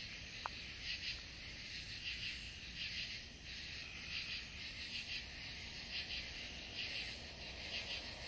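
A background chorus of night insects chirping: a high, pulsing trill that keeps going without a break, with one faint tick about half a second in.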